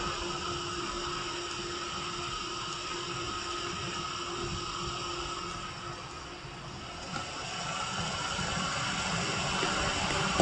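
Steady hum and hiss of a computer running with its fans under load during a 3D render, with a faint steady tone through it; the level dips slightly a little past halfway and then comes back up.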